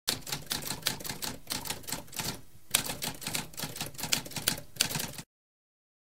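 Typewriter keys clacking in a fast, uneven run of keystrokes, with a brief pause a little before halfway. The typing stops suddenly about five seconds in.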